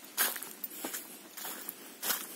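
Footsteps of a person walking on a dirt path scattered with dry fallen leaves, several steps roughly half a second apart.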